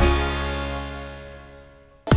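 Closing music ending on a final chord that is struck once and rings out, fading away over about two seconds.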